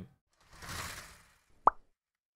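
Outro animation sound effects: a soft whoosh, then about a second later a single short, sharp pop.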